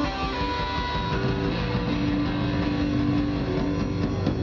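Live rock band playing an instrumental passage: electric guitar holding long sustained notes over bass guitar and drum kit.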